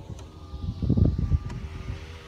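Car's electric power window motor running with a steady whine as the side window glass is raised. Low rumbling comes and goes near the middle.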